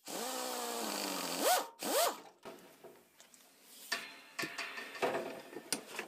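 Pneumatic air drill drilling the head off an aluminium blind (Avex) rivet: a steady whine that sinks slightly in pitch as the bit cuts, then two short rising whines as the trigger is blipped about a second and a half and two seconds in. In the second half come a few light metallic clicks and taps.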